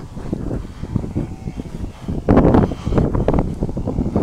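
Wind buffeting the microphone, a low, uneven rumble, with a louder stretch of rustling and knocks about two seconds in.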